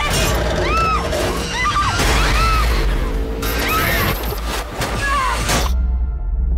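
Rusty steel tower bolts and ladder straining under load: repeated short squealing metal creaks that rise and fall in pitch, with crashing, cracking strikes, over a low rumbling trailer score. The metal sounds are the sign of the tower's corroded fixings working loose. Most of it cuts off sharply shortly before the end, leaving the low drone.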